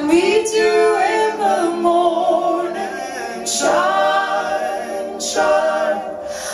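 A woman singing live into a microphone in long held notes that slide into pitch, with almost no instruments beneath the voice.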